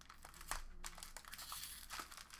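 Silver foil wrapper of a trading-card pack crinkling and crackling as it is peeled open by hand, with a sharper crackle about half a second in.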